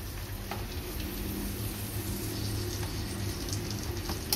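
Chopped onion and chili frying in oil in a small saucepan, a steady sizzle, stirred with a small utensil. A low steady hum runs underneath.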